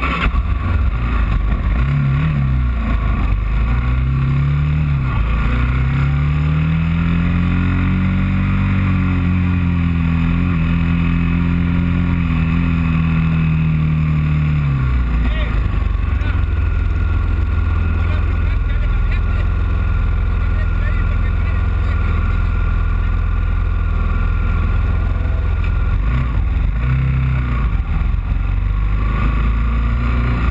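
Moto3 racing motorcycle engine heard from its onboard camera, revving up and down a few times at low speed, then holding a steady pitch before dropping away about halfway through. A heavy low rumble of wind on the microphone runs underneath.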